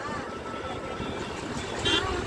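Steady outdoor rushing noise of wind buffeting the microphone and distant surf, with faint voices in the background and a short hiss near the end.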